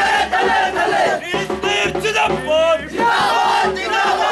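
A crowd of men shouting slogans together, many voices overlapping loudly, in the raised, chant-like manner of a political rally.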